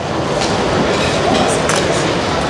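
Busy airport hall ambience: a steady, loud wash of noise with indistinct voices in it and a few short clicks.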